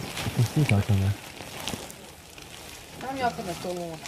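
Low, quiet voices speaking briefly near the start and again near the end, with a faint steady hiss between them.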